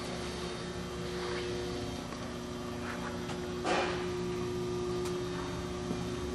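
Steady machine hum made of several held low tones, with a brief scuff about three and a half seconds in.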